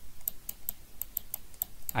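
Quick, irregular light clicks, about a dozen in two seconds, from a stylus tapping and lifting as a character is handwritten on a screen annotation.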